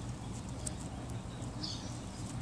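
Quiet background noise: a steady low rumble with a couple of faint clicks and a faint high chirp near the end.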